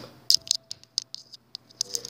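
Handling noise on the recording device while headphones are put back in: a quick, irregular run of sharp clicks and scratches, loudest just after the start.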